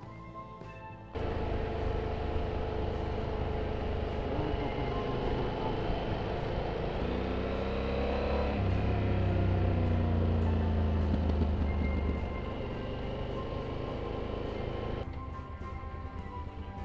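Background music, cut about a second in by a motorcycle ride heard from the bike: the engine running under heavy wind rush. Around the middle the engine note climbs as the bike accelerates, then drops back, and the music returns near the end.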